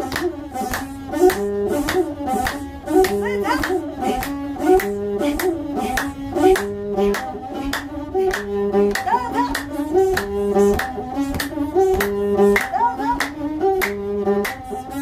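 A masenqo, the Ethiopian single-string bowed fiddle, plays a short melodic phrase that repeats over and over. Steady hand claps keep time through it, about three a second.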